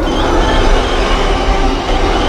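A loud, steady rushing roar with a deep rumble, like film battle effects of a storm wind and a creature bursting through flying debris; the song's music is nearly buried under it.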